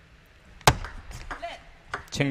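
Table tennis ball being served and played: one sharp, loud crack about two-thirds of a second in, then several lighter clicks of the celluloid-type ball off bats and the table before the point ends.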